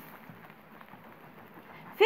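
Faint crackle of a knife sawing through the crust of a fresh baguette on a wooden cutting board.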